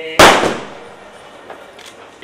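A single loud, sharp bang a fraction of a second in, dying away over about half a second, followed by a faint click about a second later.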